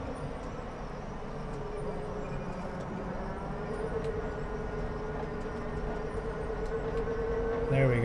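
Electric drive of the Mercedes Vision AVTR concept heard from the cabin, moving slowly through a turn: a steady whine that fades early, then returns and climbs slightly in pitch and loudness over the second half, over a low hum.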